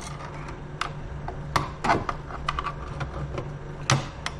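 Steel reduction clamp clicking and scraping against a plastic pelvis model as it is worked into place, a few separate sharp clicks and knocks, the loudest near the end, over a steady low hum.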